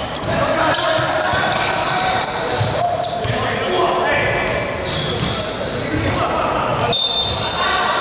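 Indoor basketball play on a hardwood court: sneakers squeaking in many short high chirps, the ball bouncing, and players calling out, all with the echo of a large hall.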